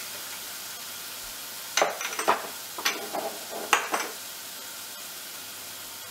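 Diced onion sizzling steadily in hot oil in a frying pan. Several sharp knocks and clatters come in two groups, at about two seconds and again at about four seconds.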